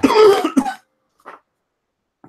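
A person coughs once, a short, harsh clearing of the throat lasting under a second.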